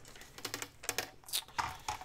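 Old book pages being handled and shuffled on a cutting mat: a run of light clicks and taps with a few short paper rustles.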